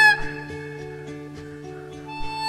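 Live acoustic blues: a harmonica note bends down and breaks off at the start, leaving acoustic guitar and double bass playing quieter steady notes with light percussion taps.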